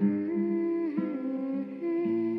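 Background music: a soft wordless hummed melody gliding between notes over sustained accompaniment.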